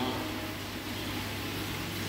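Steady low hum and even hiss of aquarium equipment, with an air stone bubbling in the tank.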